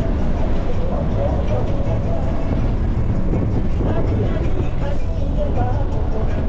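Inside a moving bus: the steady low rumble of the engine and tyres on the highway, with indistinct voices talking over it.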